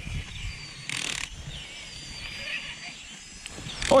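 Ice-fishing spinning reel being cranked and rod handled as a crappie is reeled up through the ice hole, with low handling noise and a brief hissing rush about a second in.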